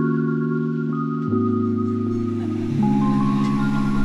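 Background music: held chords that change about every second and a half.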